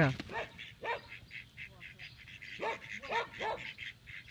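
A small flock of ducks quacking in a rapid, steady stream as a herding dog drives them. A dog barks about a second in and three times in quick succession near the end.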